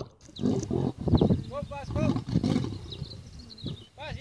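Male lion giving a run of deep, grunting roars, several in quick succession.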